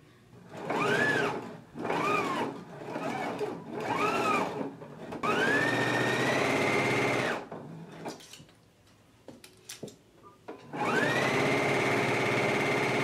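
Electric sewing machine stitching through fabric in starts and stops: three short spurts, each speeding up and slowing down again, then longer runs at a steady high speed. In the pause between the runs there are a few light clicks.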